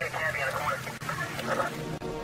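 Police radio chatter: a thin, tinny voice over the radio, heard over low sustained background music.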